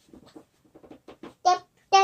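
A young child's quiet murmuring in short broken sounds, with one brief louder voiced syllable about a second and a half in.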